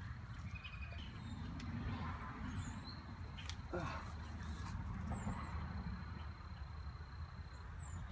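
Outdoor ambience: a low steady rumble, with a bird giving a short high chirp three times, a couple of seconds apart.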